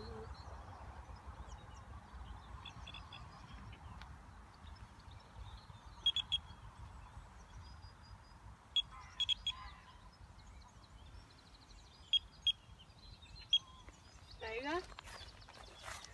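Wind rumbling on the microphone, broken by short, high electronic bleeps at one pitch in twos and threes: a carp rod's bite alarm sounding as the line is tightened to the indicator. A short rising call comes near the end.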